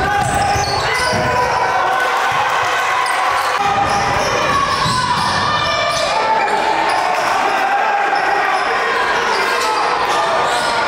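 A basketball being dribbled on a hardwood gym floor during game play. It sits under a steady background of indistinct voices echoing in the gym.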